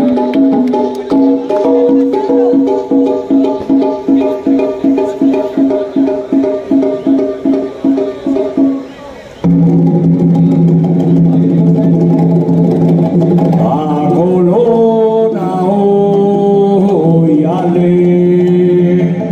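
Live Latin band music led by congas and timbales. Repeated accented chord hits come about two to three a second and fade into a short break about nine seconds in. A full sustained chord follows, with a melody line moving up and down over it.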